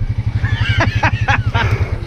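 ATV engine idling with an even, rapid low putter.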